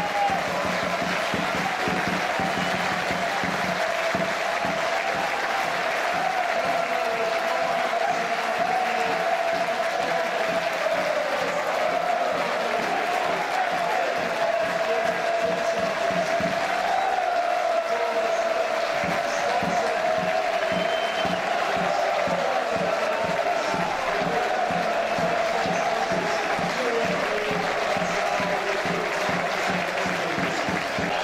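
Football stadium crowd applauding and cheering, with music that has a steady beat playing throughout.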